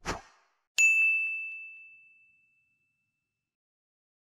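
Logo sound effect: a short swish, then a single bright bell-like ding about a second in, its one clear tone ringing and fading away over about two seconds.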